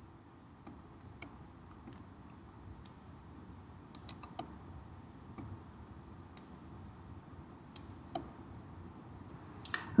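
Faint, sharp clicks of a computer mouse, about ten at uneven intervals, over low steady room noise.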